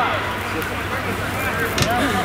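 Faint, indistinct voices of footballers calling across the pitch over steady outdoor background noise, with one short sharp knock near the end.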